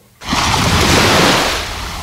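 A loud rushing surge of noise, like a wave washing in, that starts suddenly just after the start, holds for about a second and then fades away: a scene-change whoosh effect.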